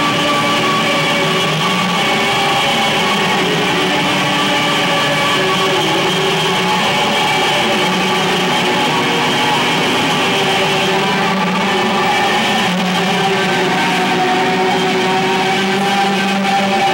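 Electric guitar played live with a band, a loud, steady wash of sustained, overlapping chords and drones with no clear beat.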